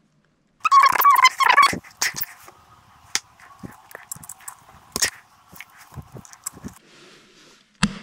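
Plastic clicking and scraping as a side brush is pressed onto its spindle under a robot vacuum, ending in a sharp click near the end as it pops into place. A loud squeal-like sound lasts about a second near the start.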